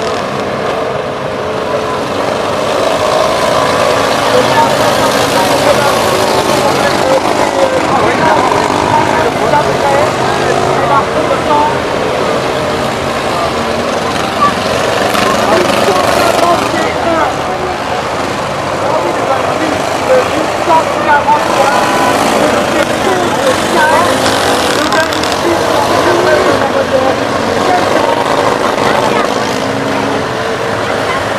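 Small stock car engines idling and revving together, under a steady babble of voices.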